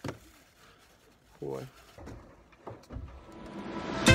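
Mostly quiet, with a man's short vocal sound about a second and a half in and a fainter one near the three-second mark. A hiss swells up over the last second.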